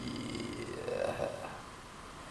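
A man's quiet, drawn-out hesitation "uh" about a second in, over low room tone.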